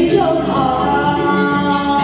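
A woman singing into a microphone, holding one long note about halfway through, over backing music.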